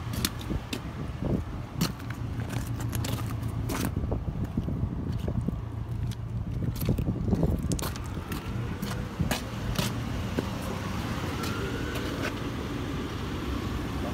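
A vehicle engine idling with a steady low hum, with scattered sharp clicks and knocks throughout.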